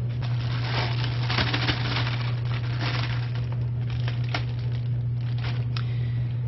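Crinkling and rustling as food scraps, banana peels and tea bags, are handled and tipped into a plastic worm bin, busiest over the first four seconds and then a few scattered clicks. A steady low hum runs underneath throughout.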